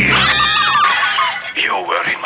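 Several cartoon slug creatures chattering in high, squeaky voices, their pitch sliding up and down and overlapping. A noisy crash-like sound lies under them for the first second, and near the end one voice swoops down and back up.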